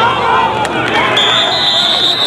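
Football players and sideline voices shouting excitedly as a fumbled ball is scrambled for and recovered. A little over a second in, a whistle is blown and held on one steady high note, stopping the play.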